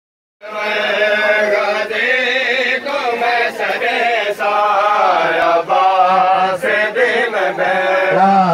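Men's voices chanting a noha, the Shia lament for Muharram, in a continuous wavering melodic line. It starts about half a second in.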